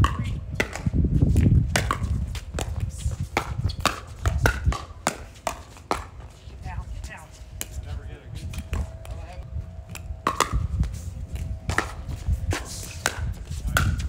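Pickleball rally: a quick run of sharp pops from paddles striking a plastic pickleball, back and forth between the players, over a low rumble.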